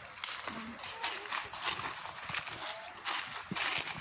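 Footsteps of several people crunching and rustling through dry leaf litter as they walk, a steady run of crackles.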